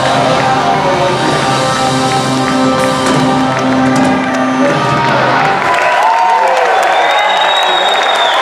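A live electric blues-rock band holds its last chord, with guitar and drums, for about five seconds until it stops. A crowd then cheers, with shouts that rise and fall in pitch.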